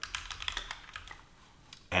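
Typing on a computer keyboard: a quick run of keystrokes in the first second or so, as a short word is typed, then a single keystroke near the end.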